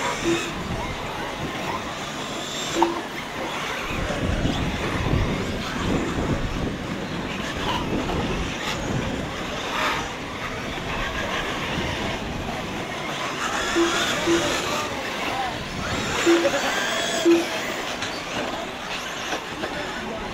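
Electric 1/8-scale RC truggies racing on a dirt track: a steady mix of motor and tyre noise across the whole stretch, with several short beeps at the same pitch scattered through it.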